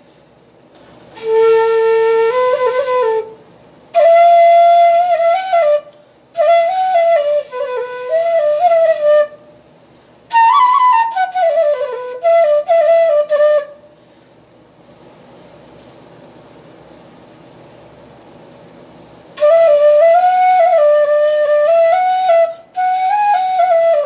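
Bansuri, a side-blown bamboo flute, played solo in short melodic phrases with brief breaths between them and one longer pause of about five seconds just past the middle.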